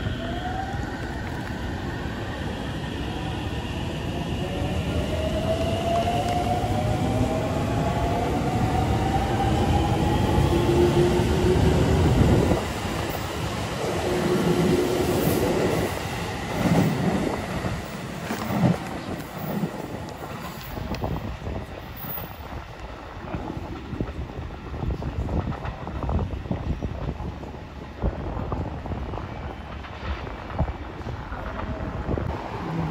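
A JR Central 313-series electric train pulls out of the platform. Its motor whine climbs steadily in pitch as it speeds up. After about twelve seconds the cars clatter past and the sound fades away by about two-thirds of the way through, leaving quieter platform noise.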